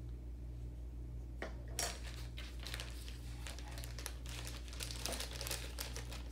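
Clear plastic parts bag crinkling as it is handled and opened, starting about two seconds in and going on in dense irregular crackles, over a low steady hum.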